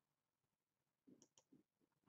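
Near silence, with a few faint computer mouse clicks a little over a second in.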